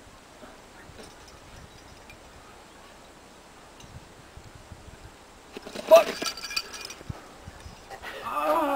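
A distant shouted exclamation from a climber on the rock, about six seconds in, with short metallic clinks of climbing gear around it; before that only a faint, steady outdoor background.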